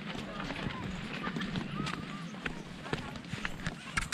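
Footsteps of a group of people walking on a dry dirt trail, many short irregular steps, with faint voices of other walkers in the background.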